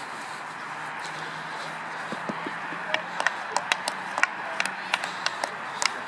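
Sharp clacks of field hockey sticks striking balls on an artificial-turf pitch, several a second from about three seconds in, over a steady outdoor background noise.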